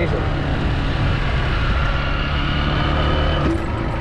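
Motorcycle engine running at steady road speed, with rumble from wind and the road on the helmet or body-mounted camera's microphone. The engine note drops near the end as the bike slows.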